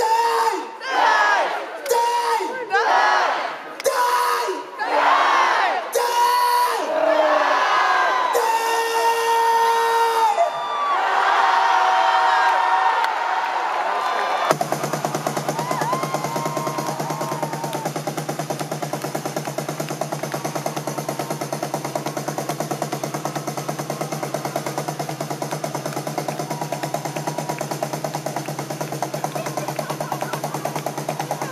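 Live rock band: at first voices sing short phrases one after another, each a second or so long. About halfway through the full band comes in suddenly, guitars, bass and drums playing a fast, steady, driving rhythm.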